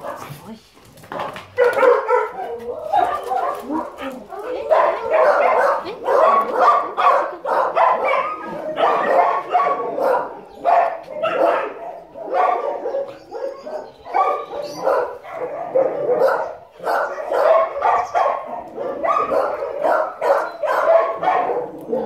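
Several dogs barking and yipping almost without a break, with a person's voice mixed in.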